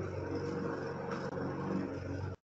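A steady low hum made of several even tones, holding level throughout.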